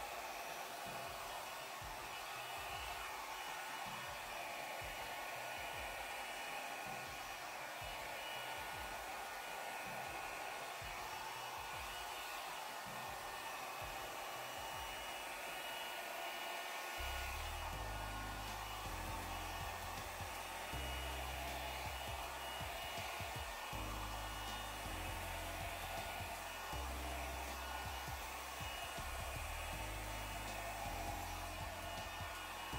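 Handheld hair dryer running steadily, blowing air across wet acrylic paint. A little past halfway, low bass notes of background music come in underneath.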